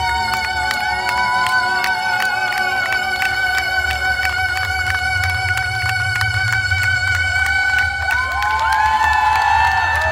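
Saxophone holding one long, slightly wavering high note over a bass-heavy backing track, with a crowd cheering and clapping. Near the end the melody moves to a higher note.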